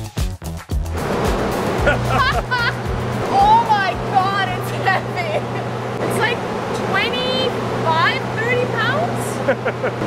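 Dance music with a steady beat cuts off about a second in, giving way to a steady low hum and rush of noise in a big industrial shed, with a woman talking over it.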